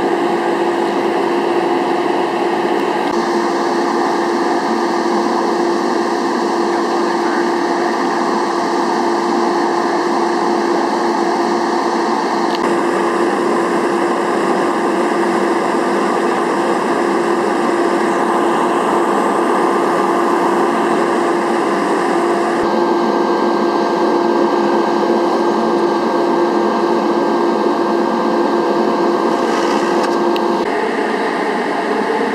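Loud, steady mechanical drone with a constant hum, like engines or equipment idling at an emergency scene. Its tone shifts abruptly a few times.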